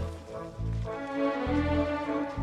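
Background music with a steady low beat, joined about a second in by louder held notes higher up.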